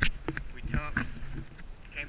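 A man's voice saying a few words about a second in, over a low wind rumble on the microphone, with a sharp click at the very start.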